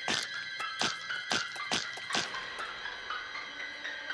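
Background music with steady held tones, under a run of about six short sharp sounds in the first two seconds or so, after which only the music goes on.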